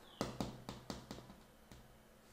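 A quick run of about seven light clicks or taps, roughly four a second, fading out near the end.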